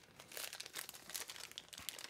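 Faint crinkling and scattered light clicks of knife packaging being handled.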